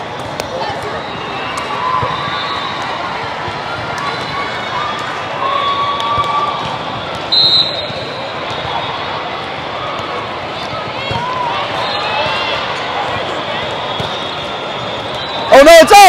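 Busy volleyball tournament hall: a steady reverberant hubbub of distant voices and shouts, with scattered thuds of volleyballs being played. About seven seconds in, one short, loud referee's whistle blast.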